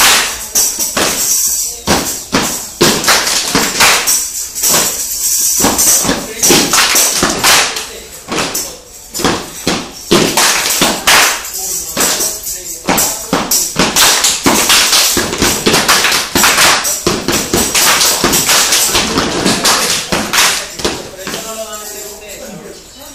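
A step-dance group stepping in unison: quick rounds of hand claps and foot stomps on a tiled floor in a fast rhythm, tailing off near the end.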